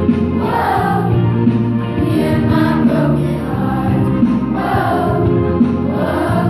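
A beginning girls' choir of junior high age singing together in unison, holding notes that move from pitch to pitch.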